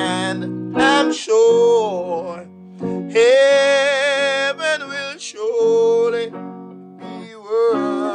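Singing with acoustic guitar accompaniment: a slow song in long held phrases with a wavering vibrato, separated by short pauses over steady strummed chords.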